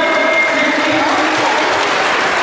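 Audience applauding steadily, with voices in the crowd heard through the clapping.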